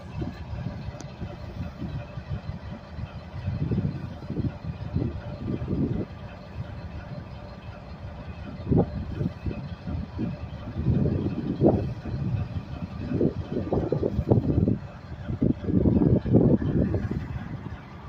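A CSX SD70ACU diesel-electric locomotive, with an EMD two-stroke diesel, running with a deep steady rumble as it moves slowly past. There are uneven louder surges through the second half.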